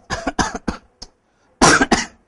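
A man's voice in short bursts, with a cough near the end.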